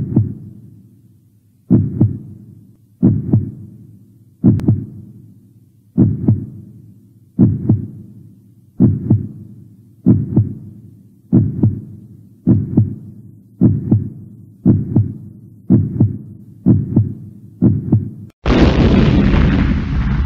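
Heartbeat sound effect: deep single thuds, each fading away, that quicken from about one every second and a half to nearly two a second. Near the end a loud burst of noise lasts about two seconds and then cuts off.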